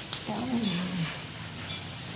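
A short voiced sound, under a second long, sliding down in pitch, with a couple of light clicks around it.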